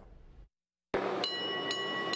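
Rubber-tyred park tour trolley running along a road, coming in suddenly about halfway through after a brief silence. It has a steady whine of several high tones and a light click about twice a second.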